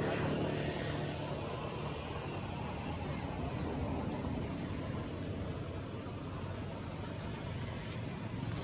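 A steady, low engine drone with a noisy rumble that holds evenly throughout, from a motor running some way off.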